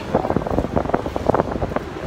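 Wind buffeting a handheld camera's microphone, a loud, irregular rumbling of rapid gusts.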